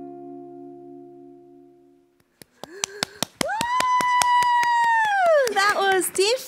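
The final chord of an electric guitar and bass guitar rings out and fades away over about two seconds. Then a woman claps and gives one long, high cheer that rises at its start and falls away at the end.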